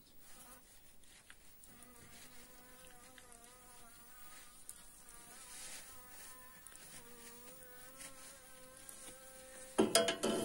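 A bee buzzing steadily, its hum wavering a little in pitch, from about two seconds in until near the end. Just before the end comes a loud, wet scrape of the metal uncapping tool cutting wax cappings off the honeycomb.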